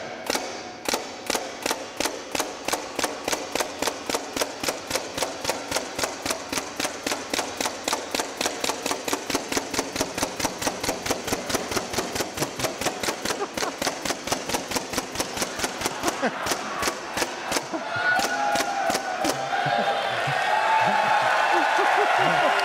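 Robot-mounted paintball gun firing single paintballs in a rapid, even series of sharp pops at a canvas, one shot per dot. The shots thin out and stop near the end as an audience starts cheering and applauding.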